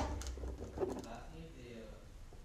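Mostly quiet room, with a faint voice murmuring about a second in.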